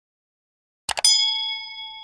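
Computer-style click sound effect, a quick double click about a second in, followed at once by a bright notification-bell ding with several clear tones that rings on and slowly fades.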